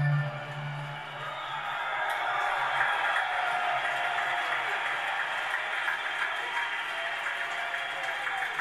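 A large concert crowd cheering, shouting and applauding as a rock song ends; the band's final chord dies away in the first second.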